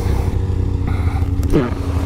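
Arctic Cat Catalyst ZR RXC 600 snowmobile's 600cc two-stroke engine idling steadily at a standstill.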